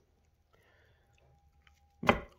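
Near silence: faint room tone, with a faint steady hum coming in about halfway through and a couple of faint clicks.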